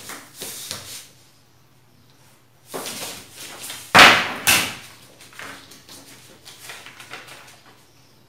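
Large sheets of pattern paper being slid and shifted on a table: short papery rustles, with a sudden sharp slap about halfway through, the loudest sound, and a second one just after, then lighter rustling.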